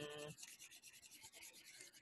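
Near silence: a faint, even rubbing hiss, with a brief hummed voice trailing off at the very start.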